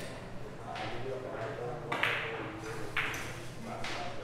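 Carom billiard balls clicking against each other, four sharp clicks spread across a few seconds, each ringing briefly in the hall, over faint background chatter.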